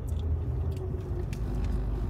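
Steady low rumble of a Jeep's engine and tyres heard from inside the cabin while driving.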